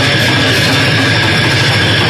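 Live band playing loud, distorted noise-rock with a drum kit: a dense, steady wall of sound.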